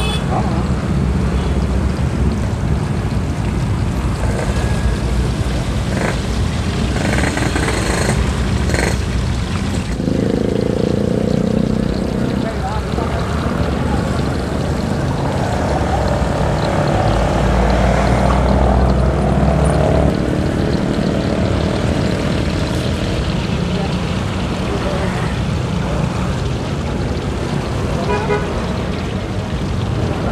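Street traffic running past, with a steady engine rumble and a horn toot among the vehicles. Under it is the sizzle of beaten egg frying in a wok of hot oil.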